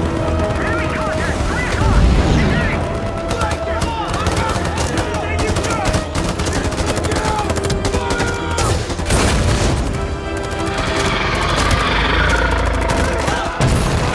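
Film battle sound mix: rapid rifle and machine-gun fire with low rumbling swells, over a music score.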